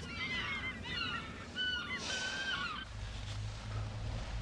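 Gulls calling: a run of short arching cries, then a few longer drawn-out calls. They cut off about three seconds in, leaving a low steady hum.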